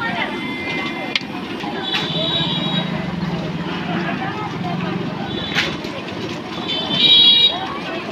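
Street traffic with vehicle horns honking a few times over a steady low rumble.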